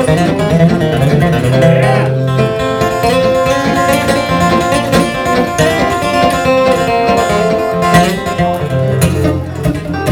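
Electric guitar playing a country lead break over an acoustic guitar's rhythm, with a bent note about two seconds in.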